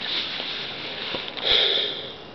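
A person breathing and sniffing close to the microphone, with one louder, hissy sniff about one and a half seconds in.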